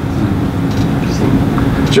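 Steady low rumble of background noise with a faint constant hum, dropping away abruptly near the end as a man's voice starts.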